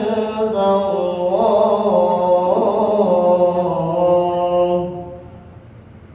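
Quran recitation (tilawah) sung by one reciter through a PA loudspeaker: a long, melismatic phrase with held, ornamented notes that ends about five seconds in.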